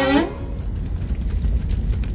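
A cartoon fire sound effect: a steady low rumble of flames with a hiss above it. A short falling voice-like glide sounds right at the start.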